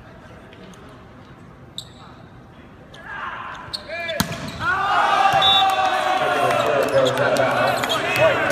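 Volleyball match play: a few sharp ball knocks in a fairly quiet arena, then the hard smack of a jump serve about four seconds in. It is followed by loud, overlapping shouting and cheering from players and spectators through the rest of the rally.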